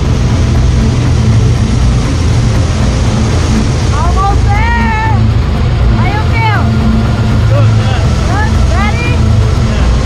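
Loud steady drone of a skydiving jump plane's engine and propeller, heard from inside the cabin. Voices are raised over it from about four seconds in.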